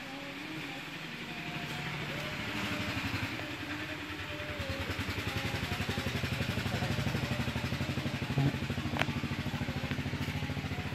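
An engine running with a fast, even throb, growing louder through the first half and then holding steady. A single sharp click near the end.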